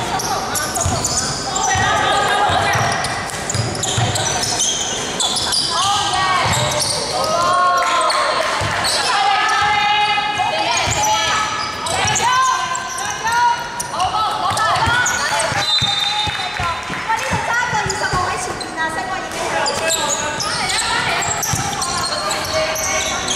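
A basketball dribbled and bouncing on a hardwood court, with players' voices calling and shouting throughout, all echoing in a large sports hall.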